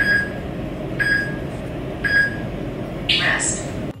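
Workout countdown timer signalling the end of an exercise: three short beeps a second apart, then a longer, brighter tone about three seconds in.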